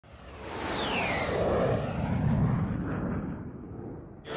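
Logo intro sound effect: a whoosh with a whistling tone that glides down in pitch during the first second or so, over a low rumble that swells and then fades out near the end.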